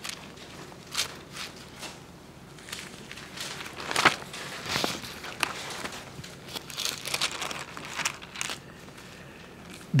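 Pages of a Bible being leafed through: a series of short papery swishes and soft crinkles with quiet gaps between, the loudest about four and five seconds in.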